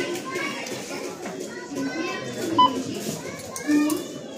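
Indistinct chatter of many adults and children in a busy shop. About two-thirds of the way in comes one short, sharp beep from a checkout barcode scanner.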